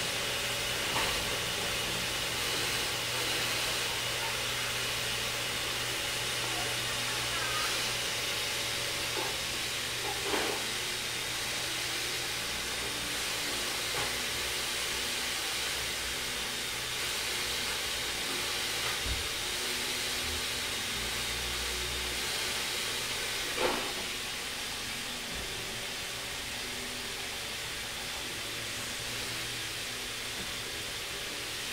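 Steady hiss, with a few faint, scattered clicks from a Siberian chipmunk gnawing an almond.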